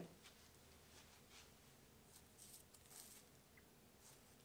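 Near silence, with a few faint soft ticks and rustles: bath bombs being handled and set down on plastic shrink film.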